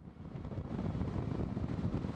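Steady rumble of road and wind noise from a moving vehicle, rising in quickly at the start and then holding even.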